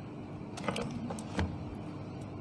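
Hands handling small items on a wooden lectern close to the microphone: a few light clicks and rustles, over a steady faint hum.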